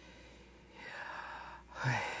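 A man's deliberately exaggerated, audible breath drawn in for about a second, demonstrating an infant's first breath. After a brief pause, a louder breath out with a touch of voice begins near the end.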